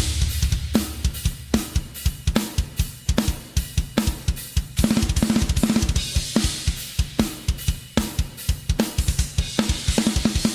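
Acoustic drum kit with Meinl cymbals played in a solo: rapid bass drum notes under sharp snare and tom hits about twice a second, with cymbals ringing over them.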